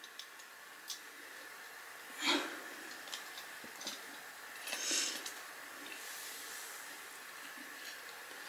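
Quiet room tone with a faint steady high hum and hiss, two soft breaths close to the microphone about two and five seconds in, and a few light clicks.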